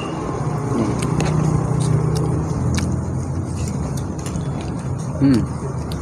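Steady low hum of an engine running, like passing street traffic, with a few light clicks of metal forks against plates and a brief murmured "hmm" near the end.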